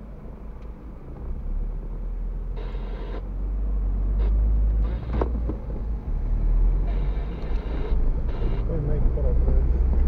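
Car engine and road rumble heard from inside the cabin as the car pulls away from a standstill and gathers speed. The low rumble grows louder from about a second and a half in, with a few short bursts of higher noise along the way.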